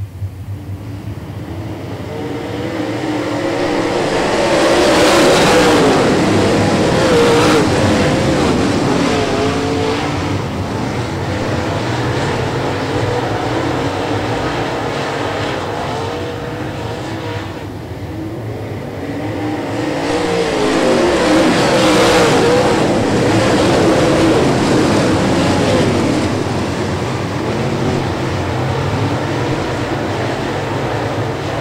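A pack of dirt-track super late model race cars at racing speed, their V8 engines running hard with pitch rising and falling as they go through the corners. The sound swells twice as the field passes, about five seconds in and again at about twenty-two seconds.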